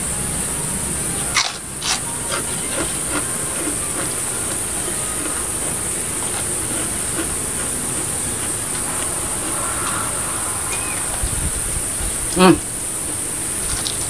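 Loud, steady high-pitched drone of insects in a rice field. Near the end there is a short hum from the man eating, and a few faint mouth and hand clicks.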